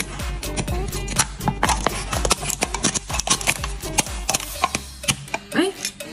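Handheld lid-removing can opener turned around the top of an empty aluminium drink can. Its small gear-like wheels cut the lid free with a rapid, irregular run of clicks, over background music.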